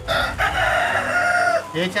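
A rooster crowing once, a single long crow lasting about a second and a half that ends with a falling note.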